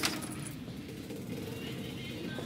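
Shop-floor background noise: a steady low hum with faint voices and tones, after a brief rustle of plastic packaging at the very start.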